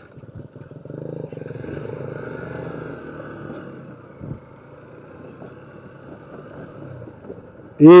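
Honda CG 150 Fan motorcycle's single-cylinder engine running steadily while riding on a rough dirt road, a little louder in the first few seconds, then settling. There is one short knock about four seconds in.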